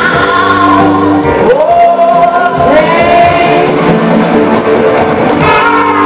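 Live rock band playing, with a woman singing long held notes that slide up in pitch over drums and electric guitars.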